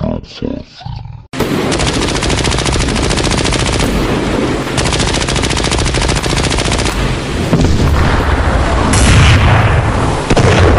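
A few short cartoon voice sounds, then from about a second in, continuous rapid-fire machine-gun sound effects, a long burst of very fast repeated shots that gets louder near the end.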